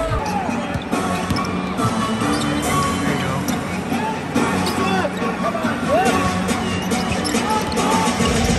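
Arena music playing over a basketball being dribbled on a hardwood court, with voices from the crowd and players.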